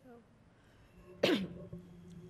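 A person coughs once, short and sharp, a little past halfway.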